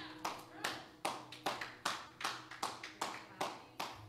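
Slow, even handclapping, about two and a half claps a second, with a faint low hum underneath.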